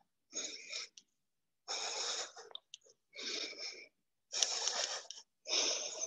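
A person breathing hard from exertion during a plank exercise: five loud breaths in a steady rhythm, each lasting under a second.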